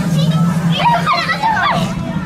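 Young children's voices, high-pitched excited calls and squeals, over a steady low hum.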